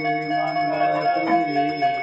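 Temple arati bells ringing continuously in rapid strokes, with voices singing underneath.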